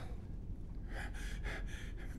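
Faint breathy sounds from a person: a few short breaths in the second half.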